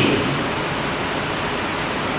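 Steady, even hiss of background noise with no speech, the recording's noise floor in a pause of a talk into a microphone.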